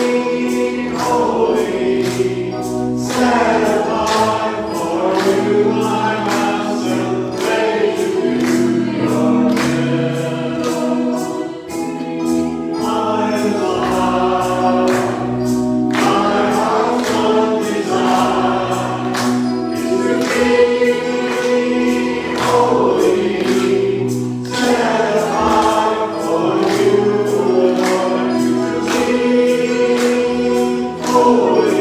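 Church choir singing a slow worship song in unison with instrumental accompaniment and a steady beat.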